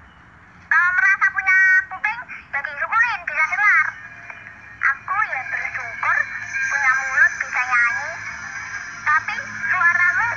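Young children's high-pitched voices in quick back-and-forth exchanges, starting about a second in. A faint steady hum runs beneath them from about halfway.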